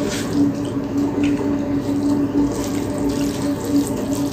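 A steady rushing noise like running water, with a low hum throughout. Faint soft wet sounds of fingers mixing rice with curry come a few times.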